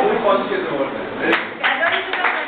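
A woman's voice with the microphone in the first half, then a group of people start clapping about a second and a half in, a quick run of claps.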